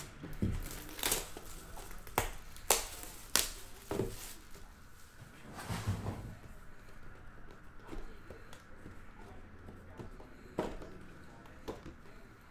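Plastic shrink wrap being torn and crinkled off a sealed cardboard trading-card box: a string of sharp rips and rustles, bunched in the first six seconds, with one more near the end.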